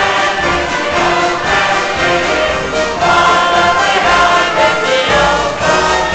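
A small live orchestra of strings and brass playing a steady tune while a group of people sing along, the hall's reverberation audible.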